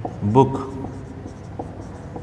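Marker pen writing on a whiteboard, a few faint short strokes.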